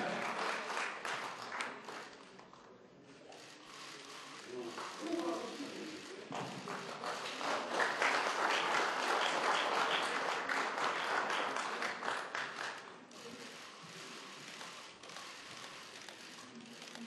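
Audience applauding. It thins out after a couple of seconds, swells again about seven seconds in, and dies down near the end.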